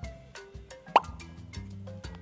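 A single short, loud cartoon 'plop' sound effect about a second in, a quick rising blip marking the wooden triangle piece dropping into its slot. It plays over light background music of short stepped notes.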